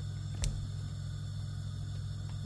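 A steady low hum, with a single sharp click about half a second in.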